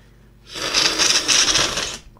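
A person slurping spilled water off a tabletop with their mouth: a noisy, bubbly sucking that starts about half a second in and lasts about a second and a half.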